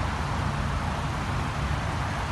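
Steady low rumble and hiss of outdoor background noise, with a faint low hum and no distinct events.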